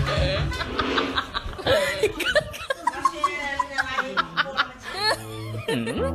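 Laughter over background music, with a sound near the end that dips in pitch and rises again.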